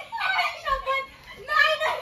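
Several people's excited, high-pitched voices, calling out and laughing together in playful commotion.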